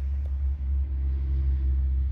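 A low, steady rumble, with a faint hum that comes in about a second in.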